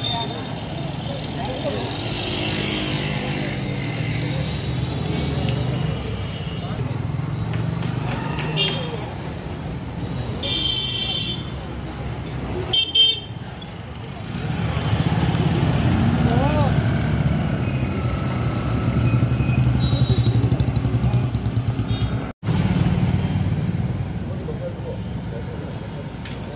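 Town street traffic: motorcycles and scooters running past with a steady engine hum, and a couple of short high-pitched horn toots a little before halfway. The sound cuts out for an instant near the end.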